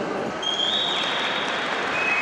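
Rink audience applauding, with a long high whistle from the crowd starting about half a second in.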